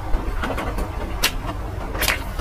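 Close-miked eating: chewing french fries, with soft crunches and clicks, the sharpest just after the start and about a second and a quarter in, over a steady low rumble.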